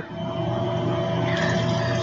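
A steady mechanical hum with a few held tones over a noisy rush, coming in suddenly as the talking stops and staying level throughout.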